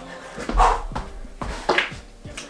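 A man breathing hard after a set of pull-ups, with two loud exhales about half a second and a second and a half in as he lets go of the bar.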